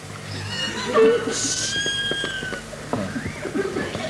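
Actors' voices on stage: short vocal exclamations, then a long, high held note of a second or so about a second and a half in, preceded by a brief hiss.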